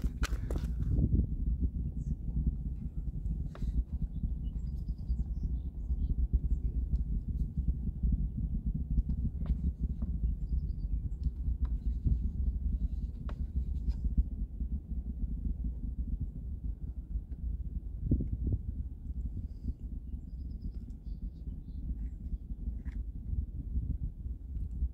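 A steady, uneven low rumble with a few faint clicks scattered through it.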